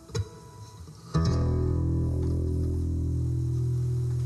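Solo acoustic guitar: a single plucked note, then about a second in a loud low chord is struck and its bass notes ring on steadily.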